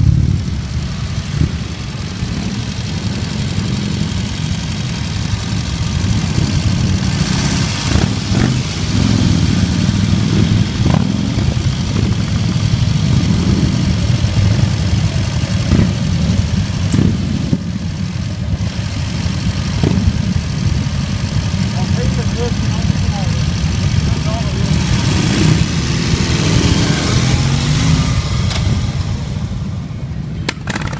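Several motorcycle engines, mostly big cruiser motorcycles and a sidecar outfit, running at low speed as they pull away and ride past one after another: a dense, steady low engine rumble, with revs rising now and then, most clearly near the end.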